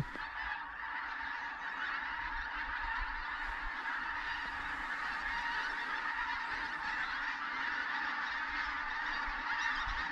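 A large skein of pink-footed geese flying over, a steady chorus of many overlapping calls.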